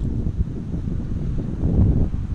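Wind buffeting a phone's microphone: a low, uneven rumble that grows a little louder near the end.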